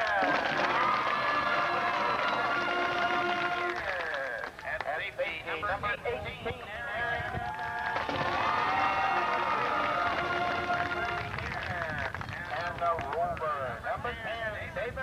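A stadium crowd cheering and yelling while a band plays two long, held phrases, the second starting about eight seconds in.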